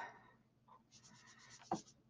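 Faint, quick scrubbing strokes of a sponge-tipped Sofft knife rubbed across the surface of a PanPastel pan to load it with pastel, with a sharper tap of the tool against the pan near the end.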